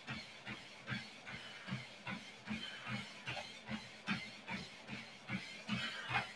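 Running footfalls thudding on a Lifepro Swift folding treadmill's belt, evenly spaced at about two and a half steps a second, over a faint steady hiss.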